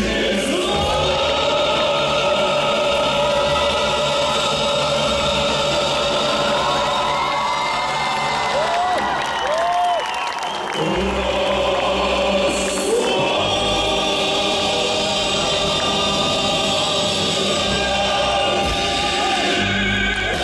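A male vocalist singing live into a handheld microphone over a full musical backing with choir-like backing voices, through a concert sound system. The music thins briefly about ten seconds in, then comes back in full.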